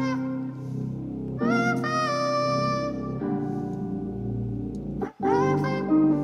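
Playback of a drumless trap-beat loop: a heavily auto-tuned, effects-laden vocal melody over guitar chords and a held synth bass. The loop drops out briefly about five seconds in, then starts again.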